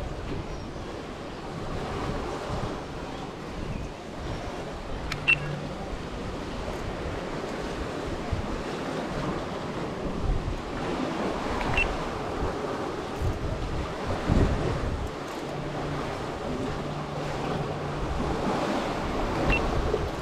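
Sea water sloshing against the pier with wind buffeting the microphone: a steady rushing noise that swells in gusts, with three short, high clicks spread through it.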